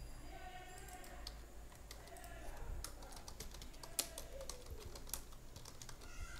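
Quiet typing on a computer keyboard: irregular key clicks as a line of code is typed.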